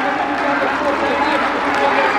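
A stadium announcer's voice over the public-address system, too indistinct to make out, with steady crowd noise beneath it.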